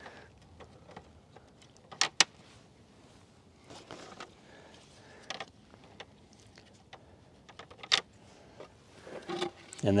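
Hollow plastic Kohree leveling blocks clacking as they are fitted together and stacked: a couple of sharp clicks about two seconds in, another around five seconds and one near eight seconds, with soft scraping between.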